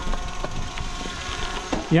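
Bicycle rolling along a gravel road: a steady rumbling, crunching noise of tyres on gravel as heard from a camera on the moving bike, starting suddenly. A man's loud voice breaks in just at the end.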